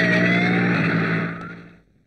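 A police jeep's engine running with a siren wailing over it, the siren's pitch sliding down and then back up. The whole sound fades out near the end.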